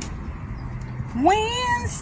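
A woman's voice sings one note that slides up and is held for under a second, starting a little past halfway, over a low steady rumble.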